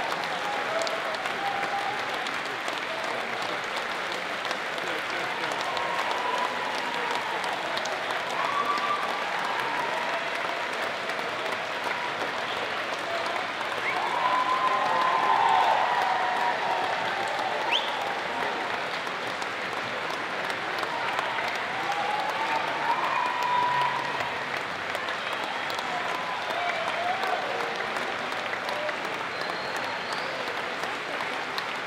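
Sustained audience applause in a hall, steady throughout, with indistinct voices under it.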